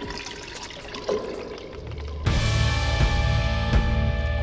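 Whiskey pouring from a glass bottle, a steady stream of liquid. A little over two seconds in, loud music with a heavy bass comes in suddenly over it.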